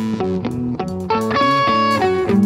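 Live band playing: electric guitars picking a quick run of notes over bass guitar and drums, with one high note held through the second half.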